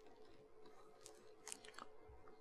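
Near silence: faint room tone with a steady low hum and a few faint short clicks.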